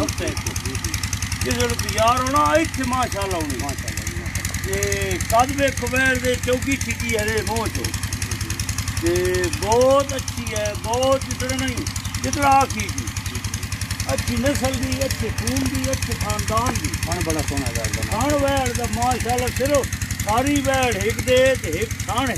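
Men talking over the steady, rapid knock of an engine running throughout.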